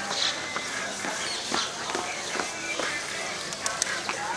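Open-air ambience with scattered light knocks and clicks over a steady background hiss, and faint distant voices.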